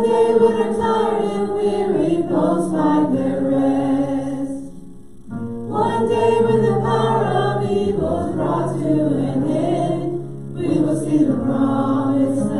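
Gospel hymn sung in church: a woman leads the singing into a microphone, with other voices and a low sustained accompaniment. The phrases last about five seconds each, with short breaks between them about five seconds in and again near the end.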